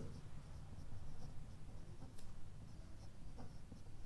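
Pen writing on a paper worksheet: faint scratching as letters are written out by hand, with a couple of light ticks of the pen tip on the page.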